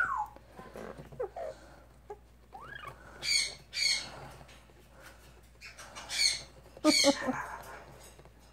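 Yellow-naped Amazon parrot giving a few short, soft squawks with quiet gaps between, one a small rising note.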